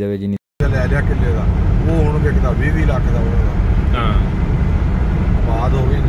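Steady low road and engine rumble inside a car's cabin while it cruises along a motorway, starting abruptly after a cut about half a second in.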